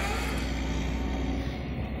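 Backhoe engine running steadily with a constant low hum.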